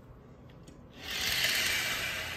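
A sheer curtain being pushed aside, its fabric brushing and rustling for about a second and a half, starting about a second in.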